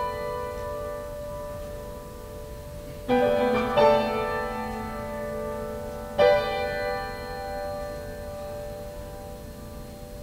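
Grand piano playing slow, sustained chords. One is struck about three seconds in, a second follows just under a second later, and a third comes about six seconds in; each is left to ring and fade.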